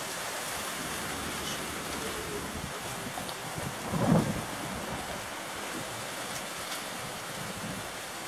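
Steady outdoor background hiss, with a brief louder low thump about four seconds in.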